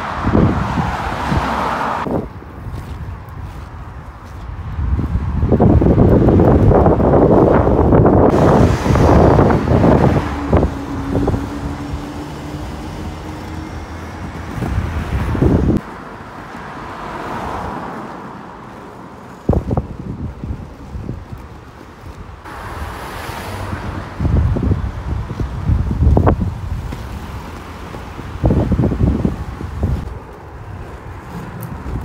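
Skateboard rolling over asphalt and paving, a rough rumble that swells and fades with gusts of wind on the microphone, with a few sharp clacks from the board along the way.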